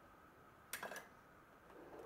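Near silence, broken about three quarters of a second in by a short double knock, handling noise on the workbench.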